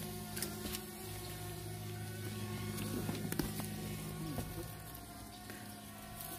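A steady low buzzing hum that holds one pitch throughout, with a few faint rustles and clicks.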